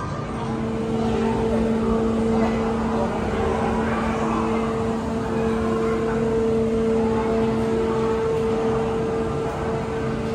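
A steady low machine hum, one held note with its overtone, over a background din of people in a train station.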